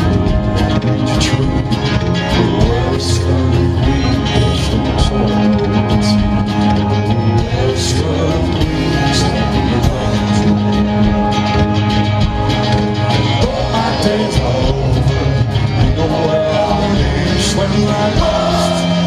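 A live rock band playing loudly in a club, heard from the audience: electric guitar, keyboard, bass and drums with cymbal hits sounding through the PA.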